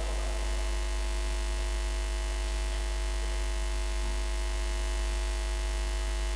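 Steady electrical mains hum from the microphone and loudspeaker system: a low, unchanging drone with a stack of even overtones above it.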